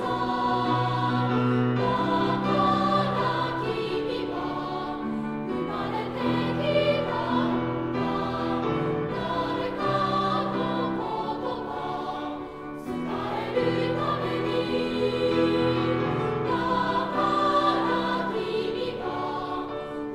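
A massed children's and youth choir singing in sustained chords that change every second or two, with a brief dip in loudness about two-thirds of the way through.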